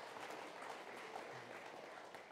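Faint audience applause, an even patter of hand claps with no voices over it.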